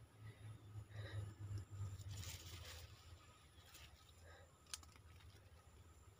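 Near silence: faint soft rustling, with a single sharp click about three-quarters of the way through.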